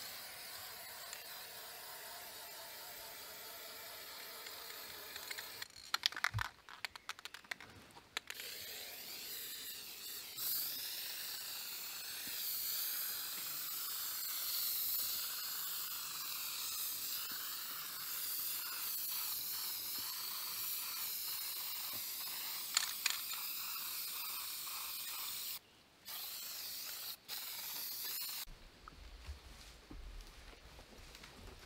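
Aerosol spray paint can hissing in long, steady sprays. About six seconds in the spray breaks for a quick run of sharp clicks, and the hiss stops near the end.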